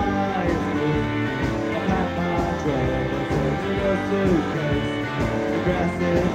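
Indie pop band playing live: guitars over a steady drum beat, in a loud concert recording.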